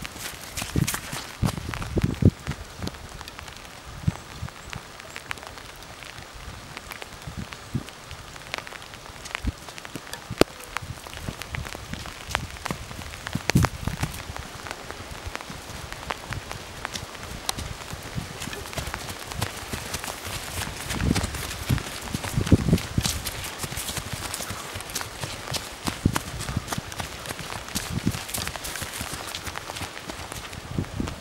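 Trail runners' footsteps pounding past on a wet, muddy mountain path, heaviest near the start, about halfway and again a little past twenty seconds. Under them, a steady patter of light rain with many small ticks of drops.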